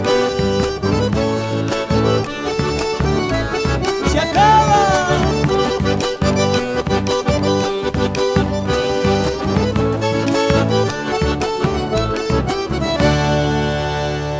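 Instrumental chacarera: accordion carrying the melody over guitar and a steady drum beat, with one short sliding note about four and a half seconds in.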